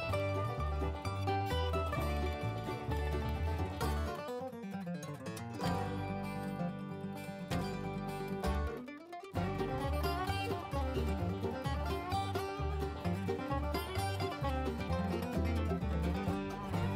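Background music led by plucked string instruments over a steady bass pattern; the bass drops out briefly about four seconds in and again near nine seconds.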